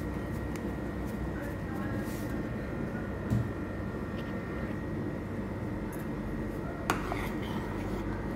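Salted water at a rolling boil in a large steel pot, bubbling steadily under a faint steady hum, with one sharp click near the end.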